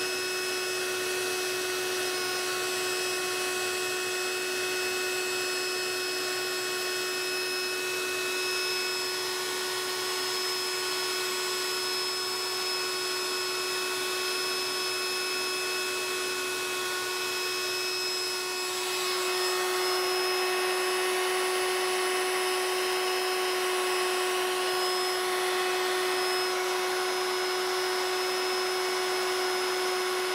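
CNC flat coil winder running, its stepper motors giving a steady whine over a mechanical hiss while it winds a flat spiral coil of super fine enameled copper wire. About 19 seconds in, the sound grows a little louder and noisier.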